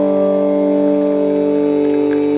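A Telecaster electric guitar chord sustaining through a 1950 Magnatone Varsity tube amp and its 8-inch speaker, held and ringing steadily with no new strum.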